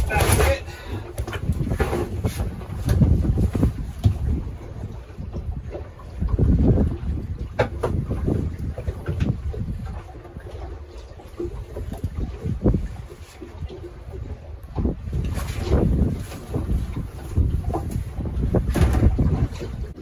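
Wind buffeting the microphone in gusts on a small boat in choppy water, with scattered knocks and rustles as a gill net is hauled in by hand over the side.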